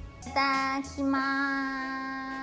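Music with a high, child-like singing voice, which comes in about a third of a second in and holds long notes at one pitch, the second note sustained to the end.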